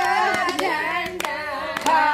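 A group of women singing a folk song together, with hand claps keeping a steady beat.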